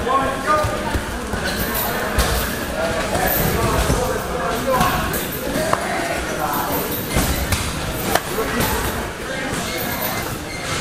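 Kicks and punches landing on Thai pads and focus mitts, several sharp thuds spread out, over the echo of a busy training hall with background voices.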